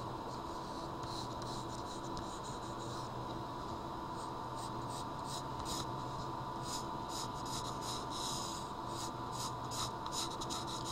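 Pencil drawing on paper: repeated scratchy strokes as curved lines are sketched, coming quicker and denser in the second half, over a steady low background hum.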